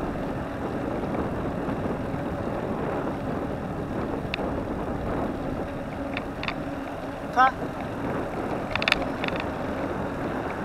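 Steady rush of wind on the microphone and tyre noise from a bicycle riding along a paved road. A brief, wavering pitched sound about seven seconds in is the loudest moment, and a few sharp clicks follow near nine seconds.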